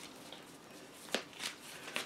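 Tarot cards being shuffled and fanned by hand: a quiet card rustle with a few light clicks, the sharpest about a second in.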